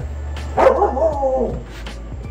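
A newborn puppy crying out once, a wavering whine-like yelp that starts about half a second in and lasts under a second, as it is handled and stimulated to urinate.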